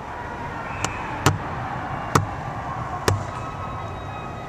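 Four sharp bangs, roughly a second apart, over the steady background noise of an ice hockey arena.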